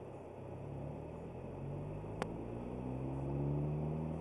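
Car engine accelerating, heard from inside the cabin, its pitch rising and growing louder toward the end. A single sharp click about two seconds in.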